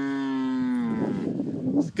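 One long moo from a cow in the herd, held steady and dipping in pitch as it ends about a second in.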